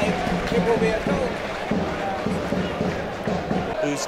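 Speech: a man talking, with stadium crowd noise underneath.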